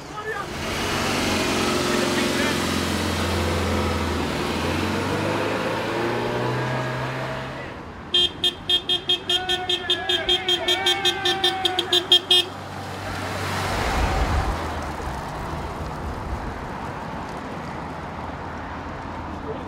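Small car's engine running as it pulls away, then its horn tooted in a rapid string of about twenty short blasts lasting some four seconds, a little past the middle. Low engine and road noise follow as it drives off.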